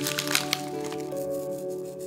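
Dried thyme crackling as it is rubbed and crumbled between fingers over the dish: a cluster of sharp, dry crackles in the first half second, then only faint ticks. Steady background music plays throughout.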